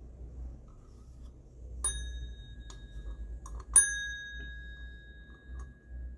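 A small hard metal object tapped twice, each tap ringing out with a clear metallic tone. The second tap, a couple of seconds later, is louder and rings on for about two seconds, with a few light handling clicks between them.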